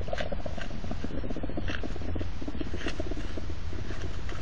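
Hedgehogs in courtship, puffing and snorting in a rapid, unbroken run of short huffs.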